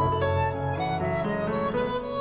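Harmonica playing a quick run of notes that steps downward, over piano accompaniment with deep bass notes at the start.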